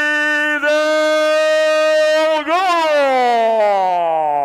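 An announcer's voice drawing a skater's name out into one long call: held at a steady pitch for over two seconds, then lifting briefly and sliding down in a long falling glide.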